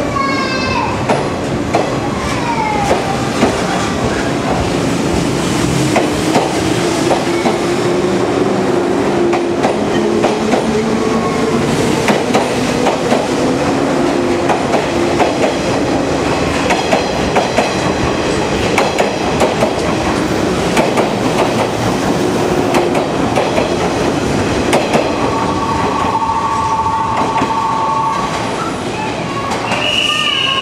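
A 583-series electric sleeper train pulling out and accelerating past close by, its wheels clicking over the rail joints while the traction motors' whine rises in pitch. A steady two-note tone sounds for a few seconds near the end.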